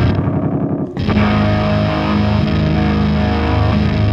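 Electric guitar and bass played loud through the Fuzzrocious Blast Furnace fuzz pedal, sustained distorted chords. The sound goes thin and dull briefly at the start, then the full fuzz comes back in about a second in.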